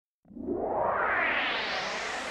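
Synthesizer intro of a freestyle electro dance track: after a moment of silence, a sustained synth swell starts and grows steadily brighter.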